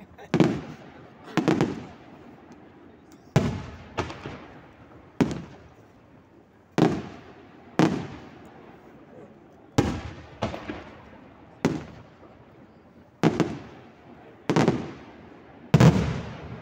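Aerial firework shells bursting overhead: about a dozen loud bangs, irregularly spaced a second or so apart, each followed by a rolling echo that dies away.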